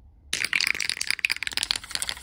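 Aerosol can of matte lacquer being shaken, its mixing ball rattling in quick clicks. The rattling starts about a third of a second in and thins out near the end.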